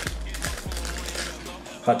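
Small clicks and rustling from pins and their card packaging being handled, with faint background music.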